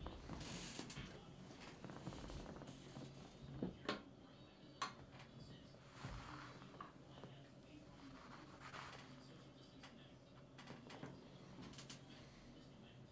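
Quiet room tone with faint handling and rustling of small objects at a desk, broken by a few sharp clicks, two close together about four seconds in and one just before five seconds.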